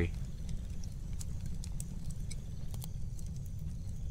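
Wood fire crackling in a metal fire pit: scattered sharp pops and snaps over a steady low rumble.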